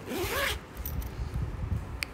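A zipper pulled quickly in one stroke lasting about half a second and rising in pitch, followed by low handling knocks and rustling.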